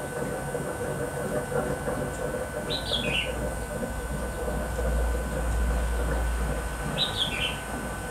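A bird chirping twice, each a short call falling in two steps, about three seconds in and again near the end, over a steady background hum.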